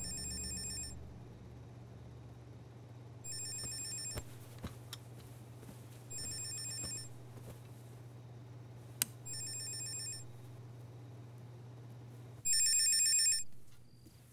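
Desk landline telephone's electronic ringer trilling five times, about once every three seconds, the last ring louder, over a steady low hum.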